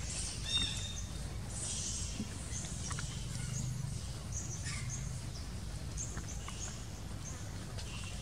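Short, high-pitched animal chirps repeating every half second or so throughout, over a steady low rumble, with a brief mid-pitched call about half a second in.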